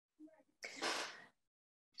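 A brief faint voiced murmur, then a breathy exhale about half a second long from a person on a video call, like a sigh while thinking.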